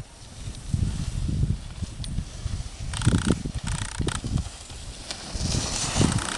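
Wind buffeting the microphone in uneven low gusts, with two short hissing scrapes about three and four seconds in, as a skier's edges carve across hard-packed snow close by.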